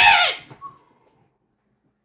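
A man's brief yell, falling in pitch and dying away within the first second, followed by dead silence.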